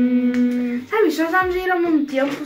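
A woman's voice holding one long, steady note, then sliding about a second in into drawn-out, sing-song speech.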